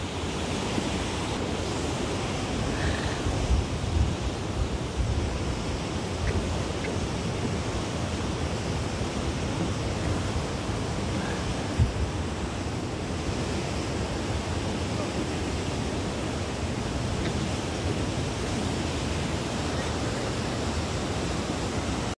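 Wind buffeting the phone's microphone: a steady rushing rumble, with a few louder gusts about four seconds in and again near the middle.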